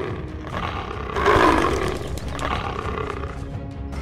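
Cartoon lion roaring, two roars, the louder about a second in, over background music.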